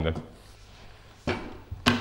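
A man's voice finishes a word, then comes a pause of low room tone with one short sound a little over a second in, and another man starts talking near the end.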